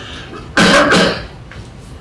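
A single cough, about half a second long, coming suddenly about half a second in.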